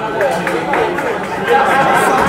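Spectators chattering, many voices talking over one another.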